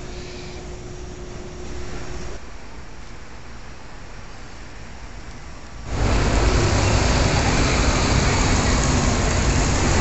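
City street ambience: quiet steady background noise with a faint hum at first, then about six seconds in a sudden switch to much louder, steady traffic noise.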